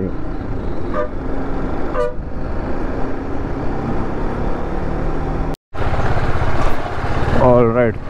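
Sport motorcycle's engine running under way, with wind on the helmet microphone and two short vehicle-horn toots about one and two seconds in. The sound cuts out for a moment just past halfway, then the engine runs on.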